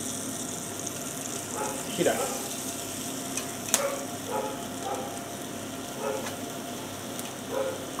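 Thick dry-aged beef steaks sizzling steadily on an iron parrilla grate over charcoal embers. A single sharp click comes near the middle.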